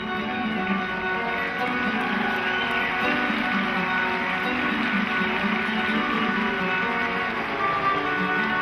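Flamenco guitar music playing steadily, with a hissy wash of noise rising over it for a few seconds in the middle.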